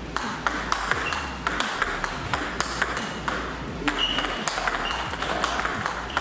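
Table tennis multi-ball practice with forehand drives: a rapid run of sharp clicks, several a second, as the balls come off the rubber bat and bounce on the table, some with a brief ringing ping.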